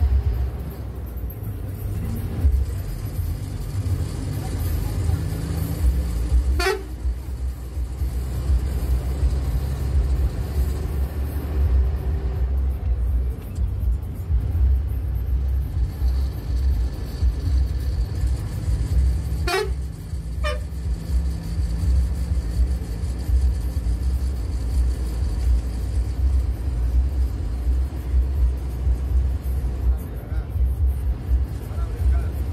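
Bus diesel engine running steadily under way, heard from the driver's cabin, with a short horn toot about a quarter of the way in and two more close together past the middle.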